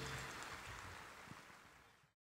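The ringing tail of an orchestra's final chord, dying away steadily and fading to silence near the end.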